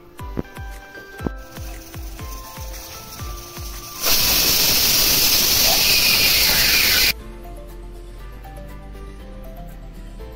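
Aluminium pressure cooker venting steam from its weighted valve: a loud, even hiss lasting about three seconds, starting about four seconds in and stopping abruptly. Background music plays throughout.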